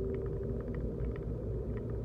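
Car driving along a city street, heard from inside the cabin: a steady low rumble of engine and tyre noise. A steady hum fades out about a quarter of the way in, and faint light ticks are scattered through it.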